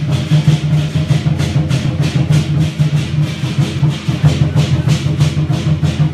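Temple-festival gong-and-drum music: cymbals and drums striking in a fast, even beat of about four strikes a second over a steady low hum.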